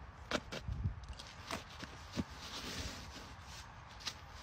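Faint scattered taps and rustles of hands handling a plastic stencil plate on artificial turf, with a soft hiss a little before three seconds in.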